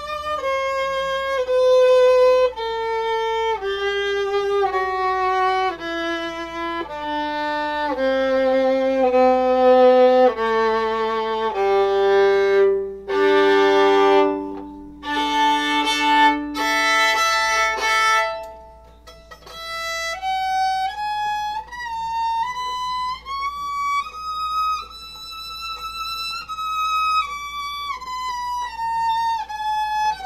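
Bird's-eye maple violin strung with Evah Pirazzi strings, played solo with the bow: a slow melody of held notes stepping down onto the low strings, then two notes bowed together for a few seconds. After a short break it climbs back up and comes down again, the held notes wavering with vibrato.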